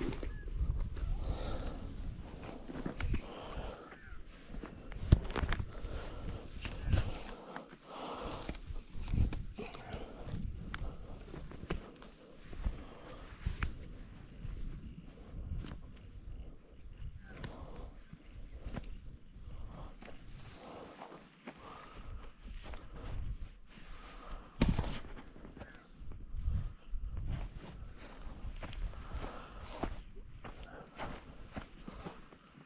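Footsteps walking through rough, dry grass: a run of soft, irregular thuds with light rustling.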